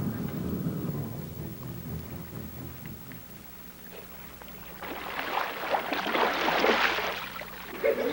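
A low rumble fades away over the first few seconds. Then there are about three seconds of water splashing and churning as a Newfoundland dog swims and wades out through shallow water.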